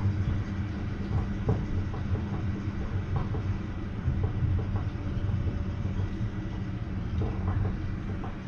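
Interior ride noise of a Düwag GT8S articulated tram in motion: a steady low rumble with a few light knocks and a faint steady high whine.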